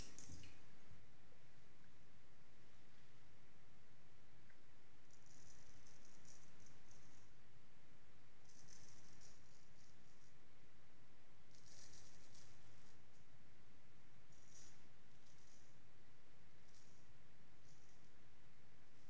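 A Wade & Butcher straight razor with a heavy hollow grind scraping through lathered stubble: about six separate short strokes, each lasting up to two seconds, with pauses between them.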